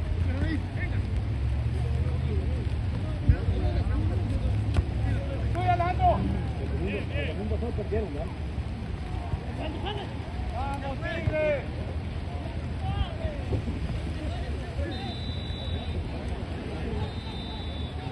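Distant shouts of players on a soccer field over a steady low rumble of wind on the microphone, with a sharp knock about three seconds in. Two short, steady, high whistle tones sound near the end.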